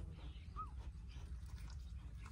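One faint, short, high squeak rising and falling about half a second in, from a newborn puppy, over a steady low rumble.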